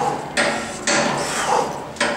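Two sharp metallic clanks about half a second apart, each with a short ring, from a cable pushdown machine worked through a triceps rep.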